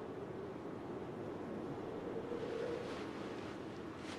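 Quiet, steady wind-like rushing ambience with a faint hum underneath.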